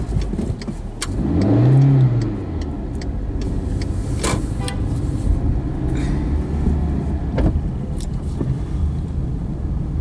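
Car engine and road noise heard from inside the cabin while driving. About a second in, the engine note rises and then falls back as the car picks up speed, and a few sharp clicks or knocks come later.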